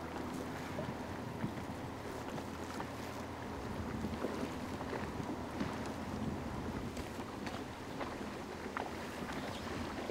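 Canoe under way on an electric trolling motor: steady water sound along the hull and wind on the microphone, with a faint steady hum from the motor.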